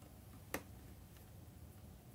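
A single small, sharp click about half a second in, over faint room tone.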